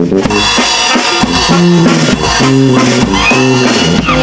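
A brass band playing lively folk dance music, with held brass notes over a steady beat.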